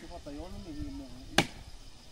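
A single sharp chop of a machete biting into the wood at the base of a standing tree trunk, about one and a half seconds in.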